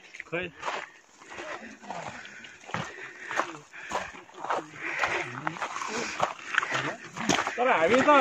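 People's voices talking, quiet at first and louder near the end.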